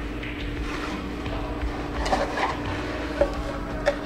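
Cardboard box being handled and its lid lifted open: a few scattered soft scrapes and knocks over a steady low hum.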